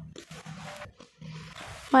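Ballpoint pen scratching on notebook paper as figures are written, a quiet run of scratchy strokes broken by a brief silence about a second in.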